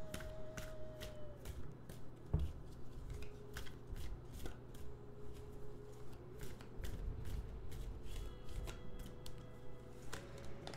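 A deck of tarot cards being shuffled by hand, cards lifted off and dropped back on the pile: a quiet, steady run of soft card clicks and slaps, a few a second.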